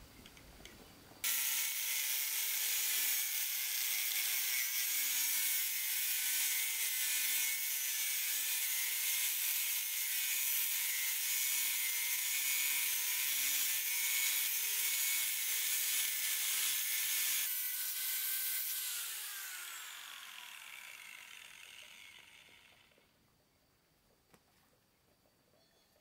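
Electric angle grinder switched on about a second in and cutting a hollow red clay brick, a steady high-pitched grinding whine. It is switched off near the end, and the disc spins down with a falling whine that fades over several seconds.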